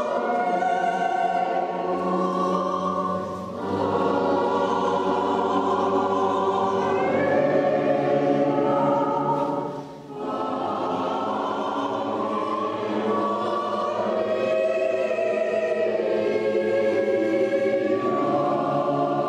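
A choir singing in long sustained phrases, with brief breaks about three and a half seconds in and again about ten seconds in.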